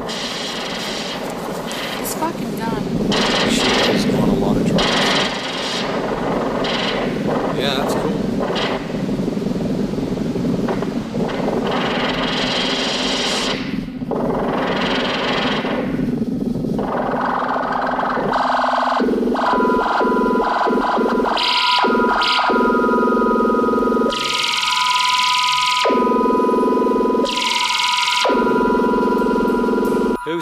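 A jumble of overlapping voices and electronic music. About twenty seconds in, two steady high tones come in and are held together while the rest cuts in and out.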